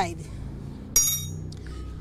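A single metallic clink about a second in, ringing briefly and brightly as it fades: a steel wrench, just used to tighten the motorcycle's oil drain plug, knocking against metal.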